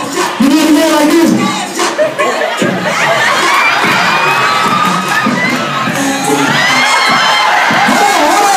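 Audience cheering and laughing, many high voices shouting over one another, swelling about two and a half seconds in.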